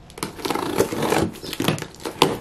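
Hands opening a cardboard box: the cardboard rustles and crackles as it is handled, with several sharp clicks.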